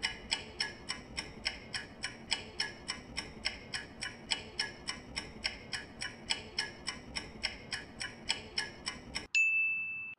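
Countdown-timer sound effect: a clock ticking rapidly and evenly, about four to five ticks a second, that ends in a short high beep as the time runs out near the end.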